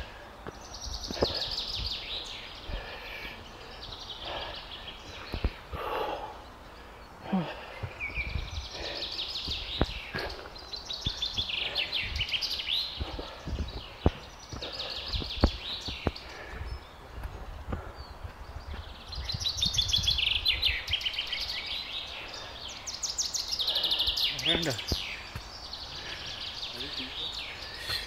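Birds singing and calling, with repeated fast trills and chirps coming and going, over the irregular low thumps of footsteps on a rocky trail.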